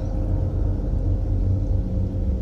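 A steady low rumble with a faint steady hum above it.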